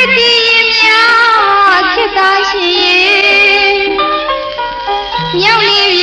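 A Burmese song: a female voice singing a melody that bends and glides in pitch, over instrumental backing.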